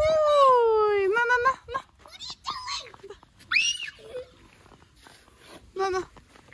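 A child's high-pitched wailing cry, one long call falling in pitch at the start, followed by shorter cries and a sharply rising squeal about three and a half seconds in.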